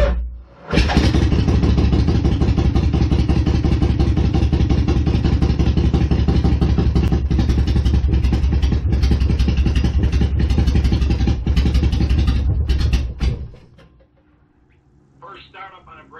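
Harley-Davidson V-twin motorcycle engine starting: a brief crank, then it catches about a second in and runs steadily for about twelve seconds. It stumbles a few times, then shuts off.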